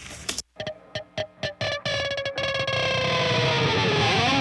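Distorted electric guitar from a hard rock mix playing back: a run of short, choppy stabs with silent gaps in the first couple of seconds, then a held chord ringing out with its pitch sinking slightly.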